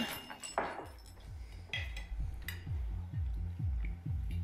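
Cutlery and glasses clinking at a dinner table, then an electronic beat with a deep, falling kick drum about three times a second that comes in after about a second and a half.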